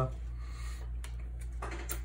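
Trading cards being handled: soft rustling of cards sliding against each other, with a small click or two, over a steady low hum.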